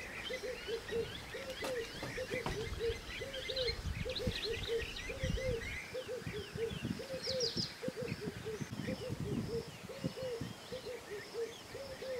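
Birds calling in the bush: a steady run of low, rounded notes repeating two or three times a second, with higher chirps and twitters from other birds over it and intermittent low rumbling underneath.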